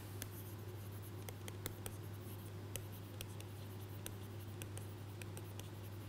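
Pen stylus tapping and scraping on a tablet screen during handwriting: a scattering of faint irregular clicks over a steady low electrical hum.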